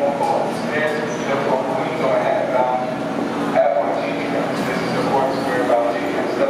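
New York City subway train standing at an underground platform with its doors open, the steady noise of the train and station under indistinct voices of people nearby.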